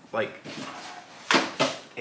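Cloth tote bag being picked up and handled, a soft fabric rustle with two brief louder rustles near the end.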